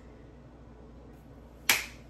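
A single sharp finger snap near the end, after a short stretch of quiet room tone.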